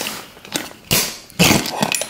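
Small clicks and a short clack from a recessed-light junction box being handled as its cover plate is twisted shut with a screwdriver, then a brief wordless voice sound about one and a half seconds in.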